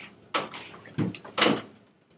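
A few short knocks and thumps in a room, the loudest about a second and a half in.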